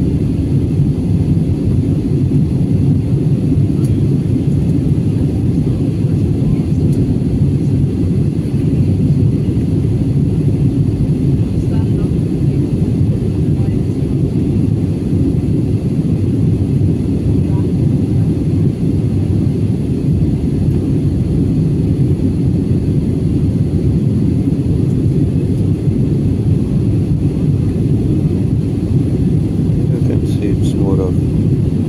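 Jet airliner cabin noise heard at a window seat: the steady, unchanging rush of engines and airflow, heavy in the low range.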